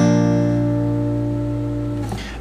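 A B-flat chord on an acoustic guitar, strummed once and left to ring, slowly fading and dying away near the end. It is fingered as an A shape moved up the neck, with the top string muted.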